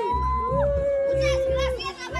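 Music with a steady, repeating bass beat under long held melody notes, with children's voices in the crowd.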